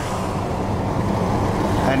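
Steady low road rumble of a moving vehicle, heard from inside the cabin.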